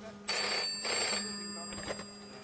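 Telephone bell ringing twice in quick succession, a double ring, with the bell tone hanging on briefly after.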